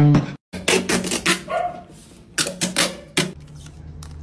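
A hummed beat cuts off, then come several short, sharp rips of packing tape being pulled off the roll, in quick clusters.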